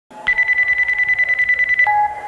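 A telephone ringing, a fast trilling electronic ring that stops just before two seconds, followed by a lower steady tone. It is the recorded phone-call intro of the track, played over the concert sound system.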